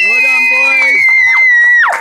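Spectators whooping and cheering a win: long, high-pitched held 'woo' shouts from two or more voices overlapping, with lower voices under them, breaking off just before the end.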